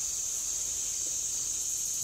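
Steady, high-pitched chorus of insects, unbroken throughout.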